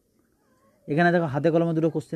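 Near silence, then about a second in a man's voice starts, drawn-out and pitched with no clear words.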